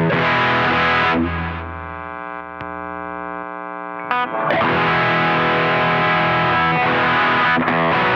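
Electric guitar, a Fender Telecaster Deluxe, played through a dual overdrive pedal (DemonFX DualGun, a Duellist clone) with heavy distortion. About a second in, a chord is left ringing and fading with a darker tone for about three seconds, then the driven riffing picks up again.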